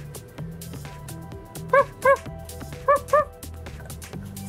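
High yipping barks like a small dog's, in two quick pairs about a second apart, over background music with a steady beat.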